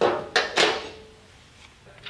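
Two metal clanks about a third of a second apart, the second ringing briefly: the brass trip plate, just taken off the machine's spindle, being set down on a steel surface.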